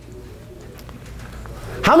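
Quiet room tone with a low steady hum, then a man's voice starting near the end.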